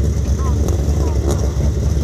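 Rallycross race cars' engines running on the gravel track, a steady low rumble, with wind on the microphone and faint voices over it.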